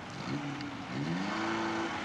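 Car engine revving, its pitch climbing over about a second and then held high and steady.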